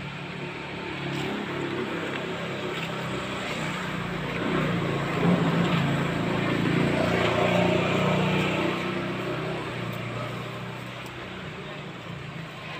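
Motorcycle engine running nearby, growing louder through the middle and fading toward the end.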